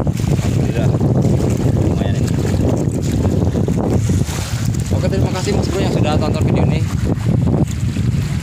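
Wind buffeting the microphone: a steady, loud low rumble, with faint voices in it around the middle.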